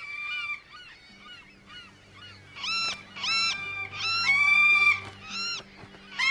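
Seabirds calling: a run of short, repeated squawking cries, a few faint ones at the start and louder, closer ones through the second half, over a low steady musical drone.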